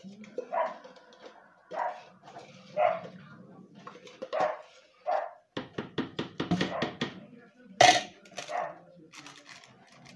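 A dog barking in short, repeated barks. From about halfway through there are quick clicks and knocks, the loudest just before the eighth second.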